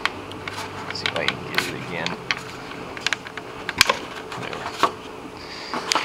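Hard plastic wire carrier being pulled up out of its clips and handled in a BMW E46 engine bay: a run of scattered sharp plastic clicks and knocks, the sharpest a little before four seconds in.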